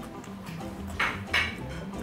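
Two short, loud crunches close together about a second in, of someone chewing a mouthful of crisp raw radish salad, over background music with a steady low beat.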